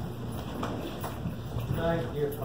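Footsteps of people walking across a stage, a few faint knocks, with a short stretch of voice near the end.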